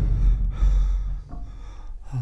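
An old man's heavy, gasping breathing as he lies ill in bed, over a deep low hum.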